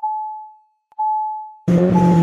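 Logo-animation sound effects: a bright single-pitched ping that fades out, struck again about a second later, then a loud synthesizer chord with a deep bass note comes in near the end, leading into electronic music.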